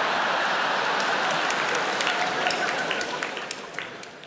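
Large theatre audience applauding and laughing, the applause thinning near the end to a few scattered claps.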